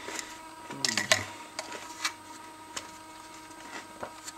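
Crunchy sugar cereal pieces being chewed with a mouthful of yogurt: a few irregular crackles and clicks, most of them about a second in.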